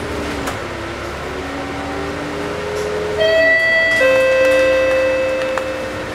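Volvo Olympian bus's drivetrain whining and rising in pitch as it pulls along. About three seconds in, a loud two-note chime falls from a higher to a lower note, each held about a second: the bus's stop-request bell.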